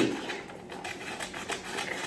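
Scissors cutting through folded paper: a run of soft, irregular snips with crisp paper rustle as the sheet is handled.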